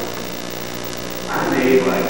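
Steady electrical mains hum. A voice comes in about one and a half seconds in.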